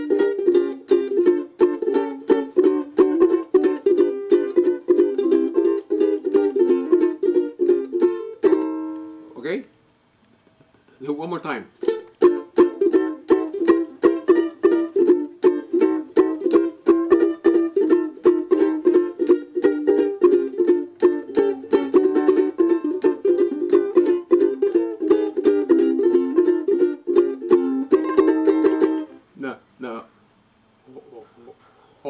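A ukulele strummed with fast, even strokes through a run of chord changes as a practice warm-up routine. The playing breaks off briefly about nine seconds in, then resumes and stops just before the end.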